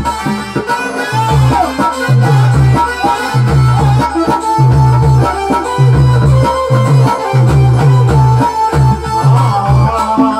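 Live devotional bhajan music played through a loudspeaker system: an electronic keyboard melody over a dholak and a heavy, regular bass-drum beat of about two to three strokes a second.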